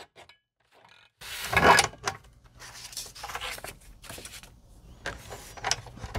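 Guillotine paper trimmer cutting a sheet of stationery paper: one loud cut about a second and a half in, followed by quieter sliding and handling of the paper with a few light clicks.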